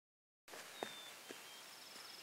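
After a brief silence, faint outdoor background noise with two light clicks about half a second apart and a faint, thin high tone.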